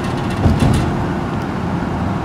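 Road noise heard from inside a moving car: the steady low rumble of tyres and engine, with a brief louder bump about half a second in.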